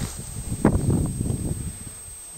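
Tall grass rustling and brushing close to the microphone as a hand pushes in among the stalks, with one sharper rustle about two-thirds of a second in.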